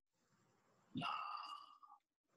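Near silence, then about a second in a brief, faint breathy vocal sound from a person, like a sigh, fading out within a second.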